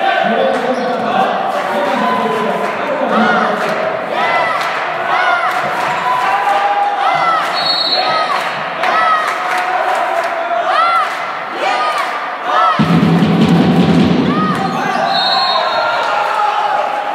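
Athletic shoes squeaking again and again on a hardwood sports-hall floor during a volleyball rally, over a murmur of voices in the hall. A referee's whistle blows briefly about halfway through and again near the end. A loud low burst of noise lasting nearly two seconds comes just before the second whistle.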